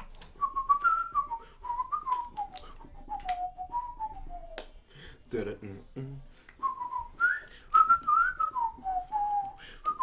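A man whistling a melody, the tune rising and falling in short phrases, with a gap about halfway through filled by a brief low vocal sound. Sharp taps or clicks sound here and there throughout.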